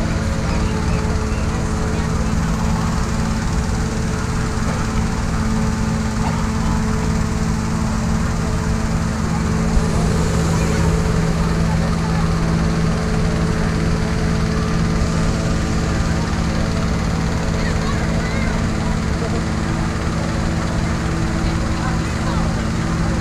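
Gasoline-powered balloon inflator fans running steadily with a constant engine drone.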